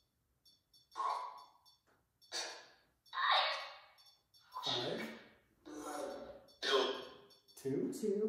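Short, separate bursts of voice-like sound, about seven of them, each under a second. Between the bursts are silent gaps with faint, rapid high ticking.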